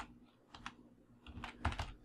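Computer keyboard keystrokes as someone types: a few single clicks around the middle, then a quicker run of keystrokes in the second half.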